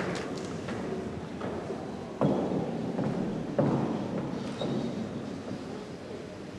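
A few footsteps on a hard floor: separate thuds about two and three and a half seconds in and a lighter one near five seconds, over low room noise.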